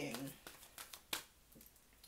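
Quiet handling of a tarot card deck: a few light clicks and rustles of cards, with one sharper click about a second in.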